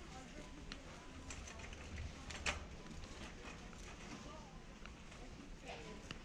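Warehouse-store background: indistinct voices of other shoppers over a steady low rumble, with scattered small clicks and rattles and one sharp knock about two and a half seconds in.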